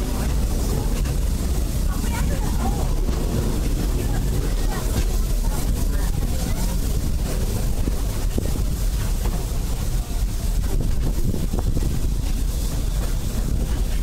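Steady low rumble of a moving steam-railroad passenger train, heard from inside an open-sided passenger car as it rolls along.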